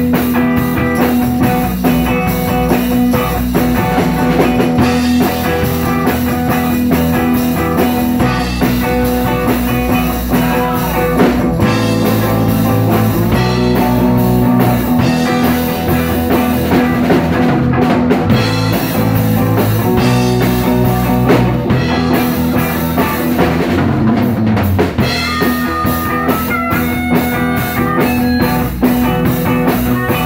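Live band playing an instrumental passage: electric guitar and drum kit in a steady groove that runs without a break.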